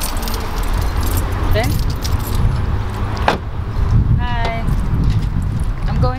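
Car keys jangling in hand, with a sharp click about three seconds in, over a steady low rumble.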